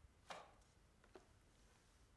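Faint handling of card flashcards: a short brushing rub as one card is slid out from behind another, then a light tap about a second later.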